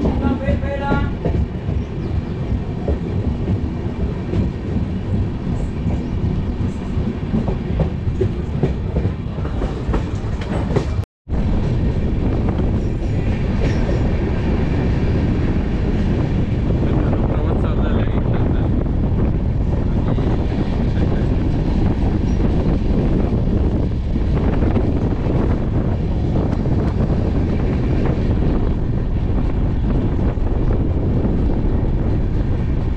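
Moving express train heard from an open coach doorway: steady running noise of the wheels on the rails, with a clickety-clack. The sound cuts out completely for a moment about eleven seconds in, then carries on as before.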